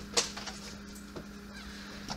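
A steady low electrical hum, with a sharp click about a fifth of a second in and a fainter tick about a second later.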